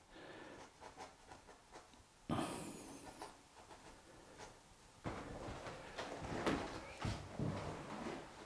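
A stiff oil-paint brush dabbing and scratching lightly on a plywood panel, in short strokes that grow busier near the end, with a breath through the nose about two seconds in.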